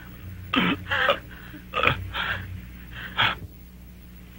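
A person's short, strained gasps and coughs, five quick bursts in about three seconds, over a steady low hum.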